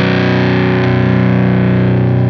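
Vola Vasti KJM J2 electric guitar with its bridge humbucker coil-tapped, played through overdrive: one distorted chord held and ringing out steadily.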